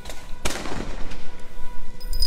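A single sharp bang about half a second in, with a short echoing tail.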